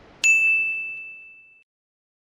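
A single high, bell-like ding that starts sharply and rings out on one steady pitch, fading away over about a second and a half.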